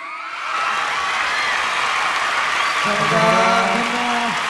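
Large concert audience applauding and cheering as the song ends, with many high-pitched screams over the clapping. The crowd noise swells in the first half-second and then holds steady.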